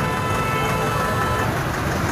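Road vehicle engines running, a steady low rumble with outdoor road noise. A faint steady tone, like a distant horn or engine whine, sits over it and fades out about one and a half seconds in.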